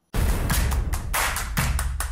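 Outro music for a logo animation: a rapid run of percussive hits and impacts over heavy bass, starting abruptly.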